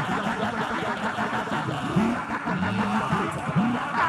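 A congregation praying aloud all at once: many voices overlapping in a steady, unbroken babble of fervent prayer.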